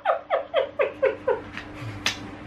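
A girl's high-pitched fit of laughter: a rapid run of short 'ha' bursts, about six a second, each falling in pitch, dying away about a second and a half in.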